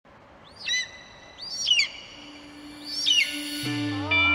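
Three high bird cries about a second apart, each a short arching whistle. A low steady music drone comes in about halfway, and a deep bass note near the end starts the song's intro.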